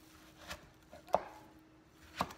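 Kitchen knife slicing through a cantaloupe and knocking on a wooden cutting board twice, the second knock, a little past the middle, the louder.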